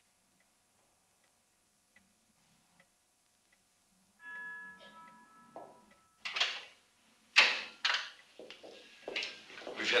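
Faint, slow ticking of a grandfather clock, about one tick every second, then a brief ringing tone about four seconds in. From about six seconds, a series of louder sharp clacks follows, and a voice begins at the very end.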